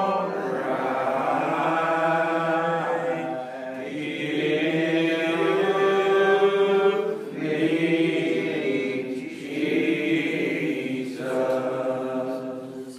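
Old Regular Baptist lined-out hymn, sung unaccompanied: voices hold long notes that slide slowly from pitch to pitch, with short breaks between phrases.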